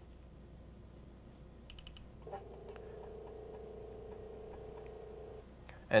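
A couple of quick mouse clicks about two seconds in, then a faint steady hum with light regular ticks for about three seconds: a floppy disk drive spinning as it reads the archive file.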